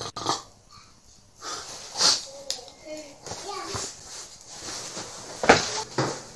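A drowsy man waking in bed: wordless groans and heavy breaths, a breathy exhale about two seconds in, then low moaning. Near the end there is a sharp knock.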